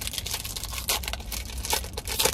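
Crinkling of a trading-card pack wrapper being handled: a dense run of quick crackles, with a couple of louder ones.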